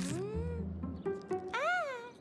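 A cartoon cat meowing twice over light background music: a short rising call at the start and a longer meow that rises and falls near the end.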